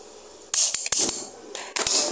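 Gas stove burner being lit: a burst of hissing gas with a few sharp clicks about half a second in, then a second short hiss with a click near the end as the flame catches.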